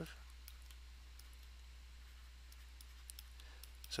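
Faint, scattered light clicks of a stylus on a writing tablet as an equation is handwritten, over a low steady hum.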